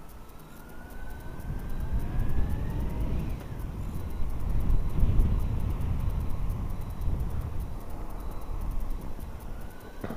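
Honda Hornet 900 motorcycle pulling away from standstill, its engine note rising as it accelerates, with wind rumble on the microphone building from about a second in.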